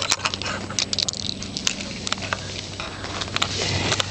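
A freshly caught bluegill flopping on the ice: a run of irregular light slaps and taps.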